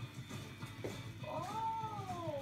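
A cat meowing: one long drawn-out meow that begins about halfway through and slides down in pitch.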